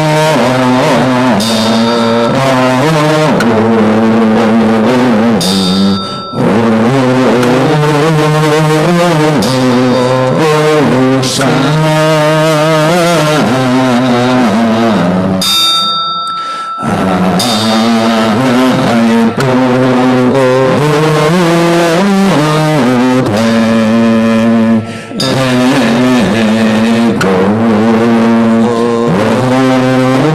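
A group chanting the name of Amitabha Buddha in a slow, melodic nianfo, voices held in long sung phrases with brief breath pauses about every nine or ten seconds.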